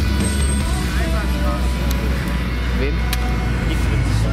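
Cars' engines running with a steady low rumble in city street traffic, with voices of passers-by here and there.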